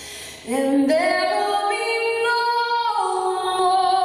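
Female lead singer's voice singing live into a handheld microphone: after a brief pause, she comes in about half a second in, slides up into a phrase and holds long sustained notes.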